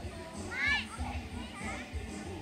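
Young children's voices at play, with a loud high call that rises and falls about half a second in and a shorter call near the end.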